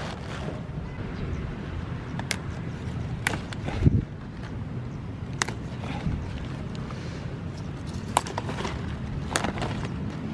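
Handling noise while cauliflower leaves are handled: a steady low rumble with a few sharp clicks spread through, and a louder thump just before four seconds in.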